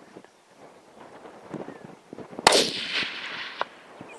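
A single rifle shot from a Tikka T3 chambered in 6.5×55 Swedish about two and a half seconds in, its report trailing off over about a second.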